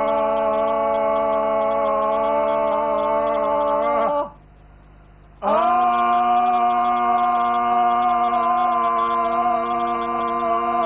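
A man and a woman each hold a long, open-mouthed 'aaa' yell at each other, steady in pitch. They break off for a breath about four seconds in and start again a second later.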